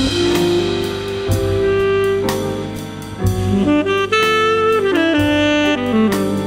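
Saxophone playing a jazz melody in long held notes over a drum kit and backing track.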